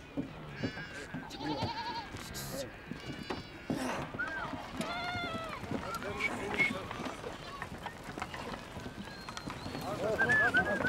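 A herd of goats and sheep bleating, many short calls coming one after another and overlapping.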